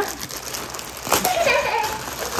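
Thin plastic shopping bag crinkling and rustling as it is handled and pulled open by hand.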